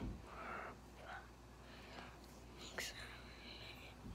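Faint whispering: a child counting under the breath, with a soft thump at the start and a sharp click about three seconds in.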